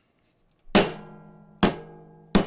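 Two heavy, drum-like hits about a second apart, each ringing on and fading away: hammer blows on a membrane keyboard, with a pitched ring.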